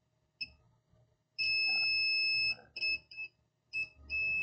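Multimeter continuity beeper sounding as test probes touch wire contacts: a steady high beep, once briefly, then held for about a second, then three short beeps. Each beep signals a closed circuit between the probes, as the wires are traced to find the positive lead.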